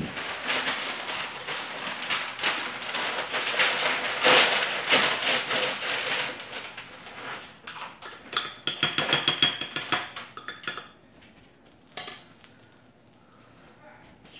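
A metal spoon stirring thick sugar syrup in a glass measuring cup, scraping and clinking against the glass, with a run of quick ringing clinks about eight to ten seconds in. A sheet of paper is being handled at the start, and there is a single sharp click near the end.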